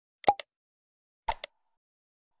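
Mouse-click sound effects of an animated subscribe button: two quick double clicks about a second apart.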